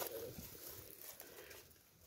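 Near silence: a faint outdoor background hiss that fades away to nothing near the end.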